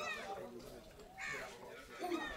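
A bird calling faintly, two short calls about a second apart.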